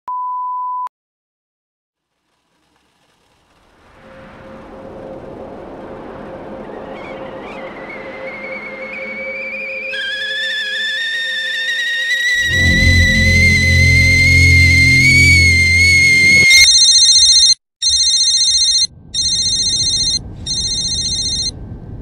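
A steady 1 kHz reference tone sounds for under a second over the colour bars and is followed by silence. A film score swell then builds for about 13 s, with a rising high whine and a deep rumble, and cuts off suddenly. An electronic phone ringtone follows and rings in four bursts.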